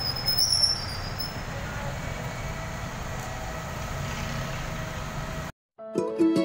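Steady hum of vehicle engines and traffic on a busy petrol station forecourt, with a brief high squeal about half a second in. The sound cuts off suddenly near the end.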